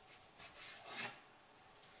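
Faint rasping strokes of a kitchen knife slicing through turkey bacon on a cutting board, a few cuts with the loudest about a second in.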